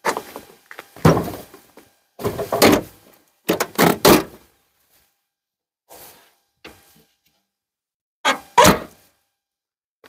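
A series of thunks and clunks, about six in all, as the swing-open tailgate and lift-up rear glass of a 1996 Buick Roadmaster Estate Wagon are worked and shut. One of the loudest comes near the end.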